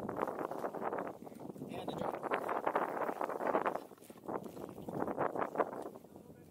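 Close scraping and rustling from climbing down the Half Dome cable route: gloved hands sliding along the steel cables and boots scuffing on granite. It is a dense run of small scrapes with a short lull about four seconds in.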